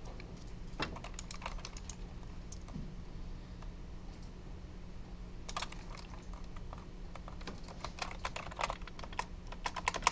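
Typing on a computer keyboard in short scattered runs of keystrokes, the busiest run near the end, over a faint steady low hum.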